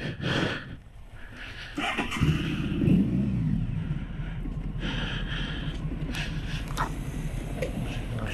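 Honda ST1100 Pan European's 1100cc V4 engine pulling away and running at low speed, with a rise in revs about two to three seconds in.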